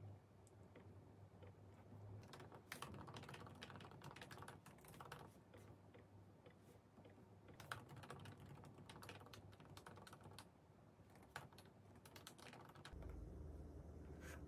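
Faint typing on a MacBook Pro laptop keyboard: bursts of quick key clicks separated by short pauses.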